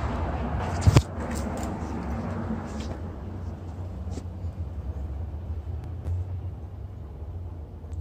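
Outdoor city street background: a steady low rumble with a hiss of traffic that fades over the first few seconds, and a single sharp click about a second in.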